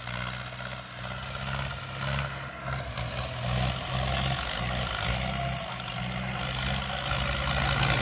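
Farm tractor's diesel engine running under load as it drives across ploughed, furrowed soil, a steady low hum that grows louder as the tractor comes closer.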